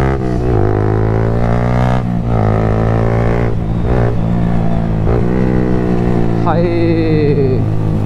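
Yamaha motorcycle with an aftermarket exhaust accelerating hard and loud. The engine note climbs and drops back several times as it shifts up through the gears. Near the end the revs fall away as it slows and downshifts.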